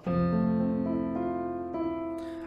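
Electronic keyboard in a piano sound playing an F major seventh arpeggio: low F notes struck together, then further chord notes (A, C, E) added one at a time, about three more, all left ringing and slowly fading.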